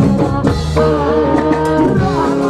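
Live band music with singing over electric guitar, keyboard and drums, with a long held note through the second half.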